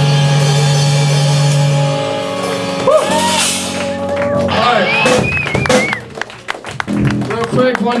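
A rock band's last chord ringing out on distorted guitar, bass and cymbals, cut off about two seconds in. Then scattered shouts and whoops with some clapping, and a man starts talking into the PA near the end.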